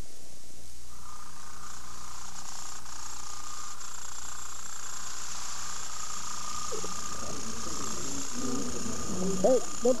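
Steady background hiss with a faint, steady high tone; a person's voice starts near the end.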